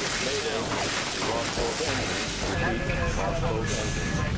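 Indistinct, muffled voices over a steady rushing noise with a low rumble beneath. A faint high steady tone comes in about halfway through.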